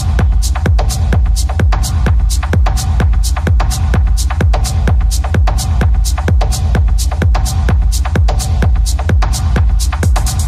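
Electronic dance music from a DJ mix: a steady kick drum at about two beats a second with high ticks on the beat, over heavy bass and a held mid-pitched tone.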